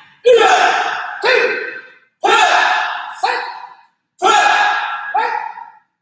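Taekwondo students shouting kihap together with their strikes: three pairs of shouts, a longer shout then a shorter one about a second later, a pair every two seconds, each echoing in a large hall.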